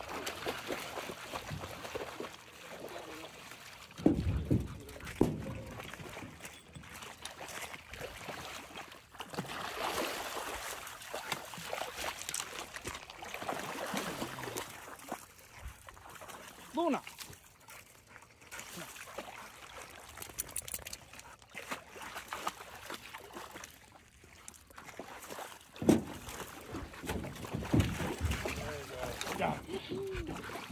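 Water sloshing and splashing as a hooked fish thrashes at the surface near the bank, with two loud thumps, one about four seconds in and one near the end.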